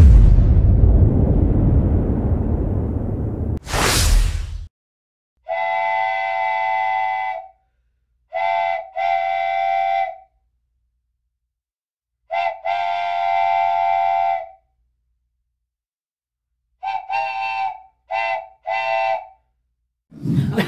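Intro music fading out with a rising whoosh about four seconds in, then a multi-note train whistle. It blows one long blast, then a short and a long, a short and a long again, and a quick run of short toots near the end.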